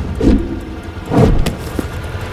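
Motor vehicle engines in a traffic jam, a low rumble that swells and fades about once a second, with a short click about one and a half seconds in.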